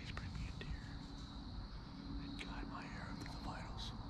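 A man whispering a prayer, faint, over a steady low background rumble.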